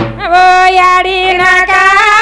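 A woman singing a Banjara wedding song in a high, loud voice through a microphone, holding long drawn-out notes with small bends in pitch. A drum beat breaks off just as she starts.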